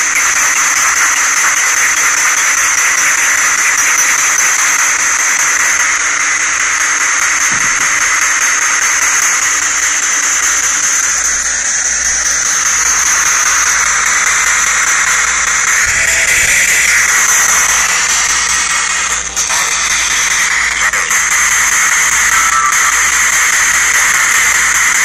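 Ghost box radio sweeping through stations, giving a loud, continuous hiss of static with fragments of broadcast sound in it.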